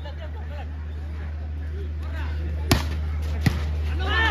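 Two sharp smacks of a volleyball being struck, about three-quarters of a second apart: the serve and its reception. Voices of players and spectators and a steady low hum run underneath.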